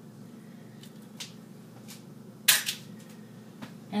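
Halves of a just-cracked eggshell being handled over a mixing bowl: a few faint ticks, then one sharp click about two and a half seconds in, against a quiet room.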